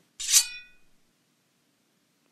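A single metallic sword strike, a sound effect in the fight, ringing out in several high tones that fade within about half a second.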